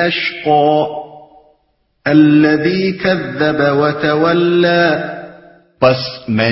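A man chanting Quranic verses in Arabic, melodic recitation with long held notes. He sings two phrases with a short silence between them, about a second and a half in.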